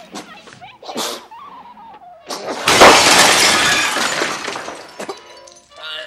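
A man choking makes short strained sounds, then a loud crash of breaking glass and crockery as he collapses onto a laid dining table, the shattering ringing on and fading over a couple of seconds.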